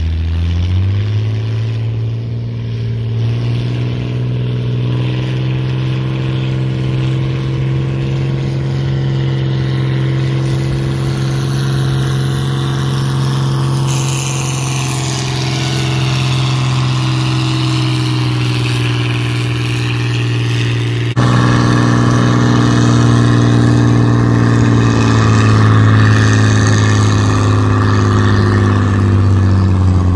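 Farmall 560 tractor engine working hard while pulling a weight-transfer sled: it revs up in the first second, holds a steady loaded pitch, then drops somewhat in pitch near the end as the load builds.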